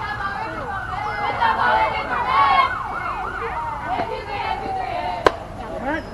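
A siren sweeping up and down about three times a second, over the voices of people talking nearby; a single sharp crack comes about five seconds in.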